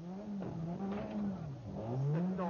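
Opel rally car engine heard from inside the cabin, its revs rising and falling several times and climbing sharply again near the end.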